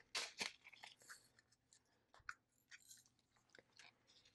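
Faint crinkling and clicking of a small plastic bag of resin diamond-painting drills being handled, with a cluster of sharp clicks just after the start and scattered lighter ticks after it.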